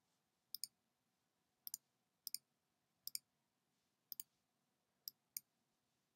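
Faint computer mouse clicks, each a quick double tick of button press and release, about once a second over near silence.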